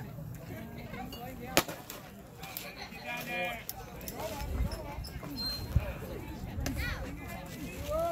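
A baseball bat hits a pitched ball with one sharp crack about one and a half seconds in, followed by shouting voices. A second, smaller sharp knock comes near six seconds.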